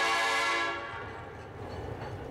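A train horn sounding a sustained chord of several notes, fading out within the first second, followed by a faint low rumble.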